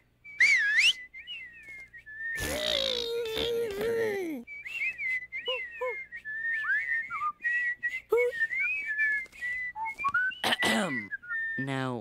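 Whistling: a string of wavering, sliding high notes, broken by a short vocal sound about two and a half seconds in.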